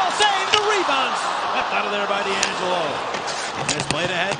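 Ice hockey game sound: arena crowd voices with repeated sharp clicks and knocks of sticks and puck on the ice.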